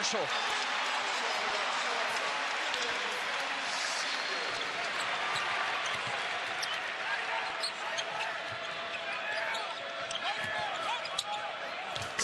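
A basketball being dribbled on a hardwood court, its bounces heard as sharp knocks over the steady noise of an arena crowd.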